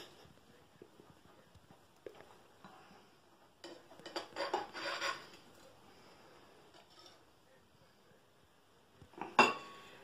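A knife knocking and scraping against a china plate as a cake is cut and slices are lifted onto a plate. There are a few light clicks at first, a busier run of scraping and knocking about four seconds in, and one sharper ringing clink near the end.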